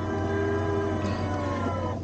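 Sanden self-serve soft-serve ice cream machine dispensing into a cone: a steady motor whine over a low hum, dipping slightly in pitch near the end.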